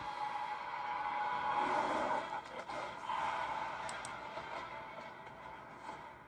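Animated-film soundtrack heard through laptop speakers: a steady, hissy wash of score and effects with no dialogue, growing quieter over the last few seconds.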